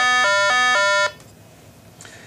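RATH SmartPhone elevator emergency phone sounding a tone through its speaker that alternates between two pitches four times, about a quarter second each, then cuts off just after a second in: the phone's signal that Stop has been held long enough to leave program mode.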